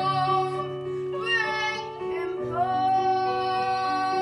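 A boy's solo singing voice holding long notes with vibrato, moving to a new note about two and a half seconds in, over steady held chords of instrumental accompaniment.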